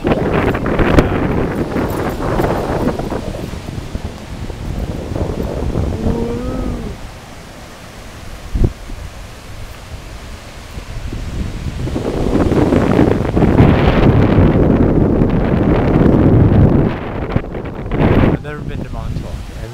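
Wind buffeting the microphone in gusts, loud in the first few seconds and again from about twelve seconds in, with a quieter lull between. About six seconds in there is a short pitched call that rises and falls, and a single sharp click comes a little before nine seconds.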